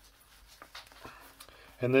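Faint rustling of a soft leather drawstring pipe sleeve being handled, with a few small clicks, as a pipe is drawn out of it. A word of speech starts near the end.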